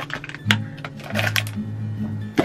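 A sharp click about half a second in as the lid comes off a plastic tub, then a quick run of clicks and scrapes as a metal spoon scoops from the tub, over background music with a steady bass pulse.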